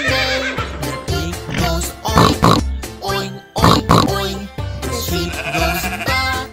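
Children's-song backing music with a steady beat, with horse neighs in two bunches, about two and four seconds in.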